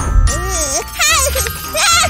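Cartoon soundtrack: a jingly background tune with a cartoon character's squeaky, wordless vocal sounds, rising into a high warbling giggle about a second in and again near the end.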